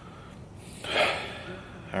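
A man's heavy breathy sigh, one exhale about a second long.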